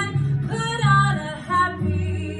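A woman singing a song, with held notes that bend in pitch, over a backing track with guitar and bass.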